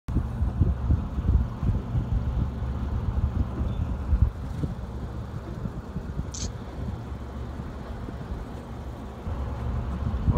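Wind buffeting the microphone over a low rumble, gustier and louder in the first four seconds and steadier after. A brief high hiss sounds about six seconds in.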